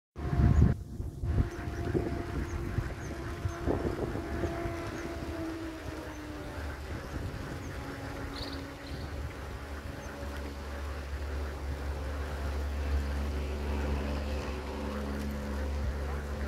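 A steady low rumble with the even hum of a running motor, and a louder bump near the start.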